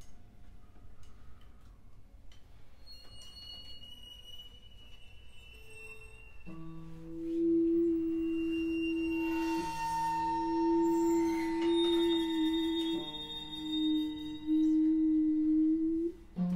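Free-improvised music from a piano, percussion and harp trio. It opens with scattered small clicks and faint high ringing tones. About six seconds in, long sustained low tones enter and hold, changing pitch slightly twice.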